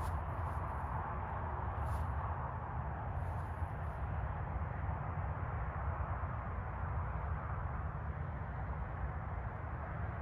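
Steady outdoor background noise: an even low rumble with a soft hiss above it, and no distinct events.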